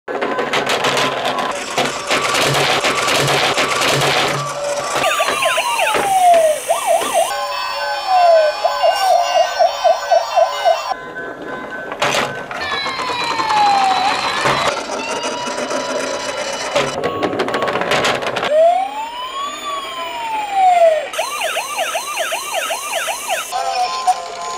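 Electronic siren sounds from battery-powered toy police cars, played through their small built-in speakers. After a busier, noisier sound effect in the first few seconds, several siren patterns follow one another: long falling and rising-then-falling wails, and runs of fast yelping pulses.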